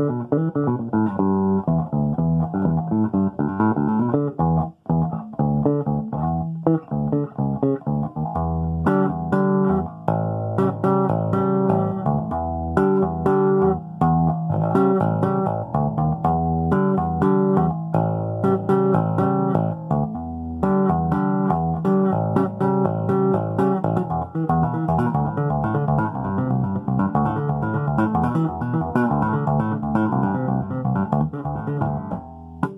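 Solo four-string electric bass guitar: sliding notes up and down the neck, then partway through a quick, even run of two-handed tapped notes on the fretboard.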